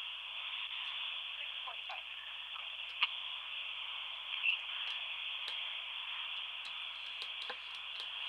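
Open telephone line on a bad connection: a steady hiss with scattered faint clicks and a couple of brief, faint voice fragments.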